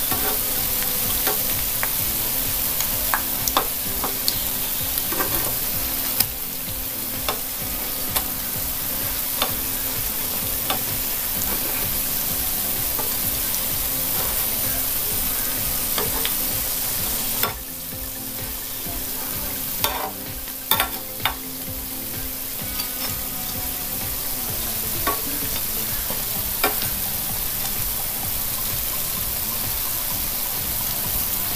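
Tapioca fritters (kappa vada) deep-frying in hot oil in a pan: a steady sizzle with scattered pops and clicks as a spatula turns them. The sizzle eases briefly just past halfway, then builds back.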